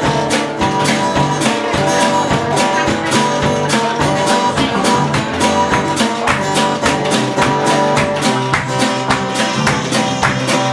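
Live acoustic band playing an instrumental break: guitars strummed to a steady beat, with no singing.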